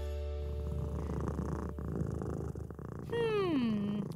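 A domestic cat sound effect: a low, steady purr, then near the end a single mew that falls in pitch.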